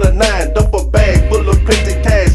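Hip hop track with a heavy, steady bass and a regular drum beat, with a rapped vocal over it.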